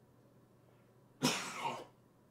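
A man coughs about a second in: one short cough in two bursts.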